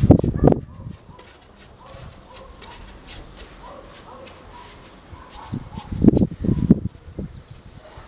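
A person's feet thudding and stepping on a tiled floor in two bursts of footwork, one right at the start and another about six seconds in. Between them it is quiet, with faint animal calls in the background.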